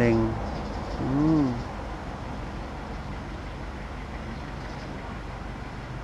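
Steady low background hum and hiss. About a second in there is one short voice-like sound that rises and falls in pitch.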